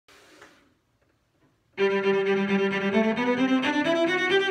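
Solo cello, bowed, entering about two seconds in after a short silence. It plays a thumb-position exercise: one long held note, then notes stepping upward.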